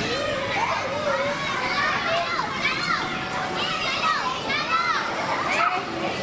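Many children shouting and squealing at once, their high voices rising and falling in pitch.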